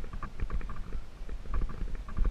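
Mountain bike riding over a sandy dirt track: rapid, irregular clicks and rattles from the bike over bumps, over a low rumble of wind and vibration on the microphone.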